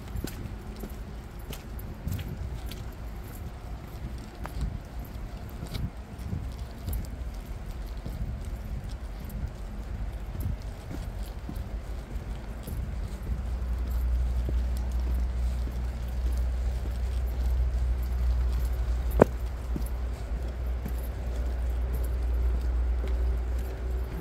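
Footsteps of a person walking up a dirt forest trail, irregular and soft. About halfway through a steady low rumble sets in, and there is one sharp click about three-quarters of the way through.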